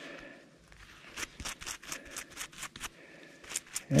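A stiff-bristled hand brush scrubbing dirt off a freshly dug bullet held in a gloved palm: a run of quick short strokes, about four to five a second, starting about a second in, with a brief pause near three seconds.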